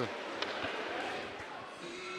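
Hockey arena ambience: a low crowd murmur that slowly fades, with a single sharp knock about half a second in, typical of a stick or puck striking the ice or boards.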